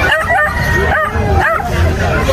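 A dog yipping: four or five short, high barks in quick succession.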